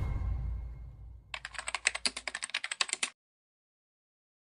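The tail of a whoosh with a low rumble dies away, then a rapid run of keyboard-typing clicks, about ten a second for under two seconds, stops abruptly: a typing sound effect in a logo intro.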